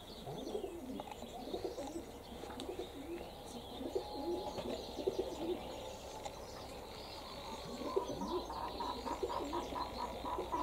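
Domestic pigeons cooing: many short, low coos overlapping, one after another.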